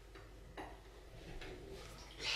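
Faint, scattered clicks and taps of a small plastic cosmetic jar being handled, four or so light ticks over low room noise.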